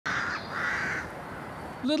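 A bird calling twice outdoors, two separate calls each about half a second long, before a man's voice starts near the end.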